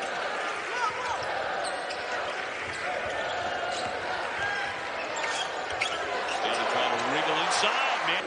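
Crowd noise filling a packed basketball arena, with a basketball dribbling on the hardwood court during live play.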